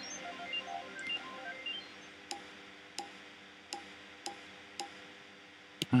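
Online slot game sound effects: a run of short tinkling notes while the reels spin, then five ringing ticks about two-thirds of a second apart as the five reels stop one after another, with no win.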